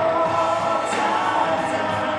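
Live rock duo playing: electric guitar and a drum kit, with a man singing long held notes at the microphone. Cymbals are struck about a second in and again near the end.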